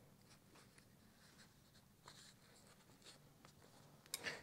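Near silence: room tone with a few faint, brief rustles and ticks.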